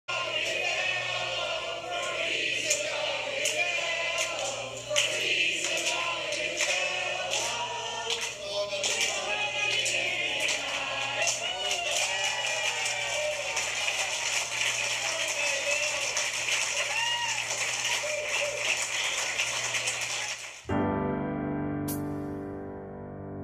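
A group of people singing together, mixed with voices and clatter over a steady low hum. Near the end it cuts off abruptly into piano music.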